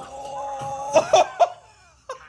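A man's drawn-out, excited "ooh" vocalisation, followed about a second in by three loud, short, explosive bursts of voice, like coughing laughs.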